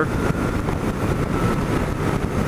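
1997 BMW R1100RT's boxer-twin engine running steadily as the motorcycle rides along at speed, mixed with wind and road noise.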